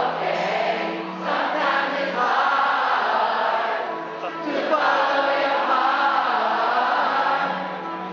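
A concert crowd singing along together in two long phrases over held chords from a live pop ballad.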